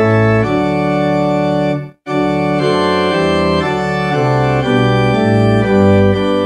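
Church organ playing a hymn in held chords over a moving bass line. The sound cuts out completely for a split second about two seconds in.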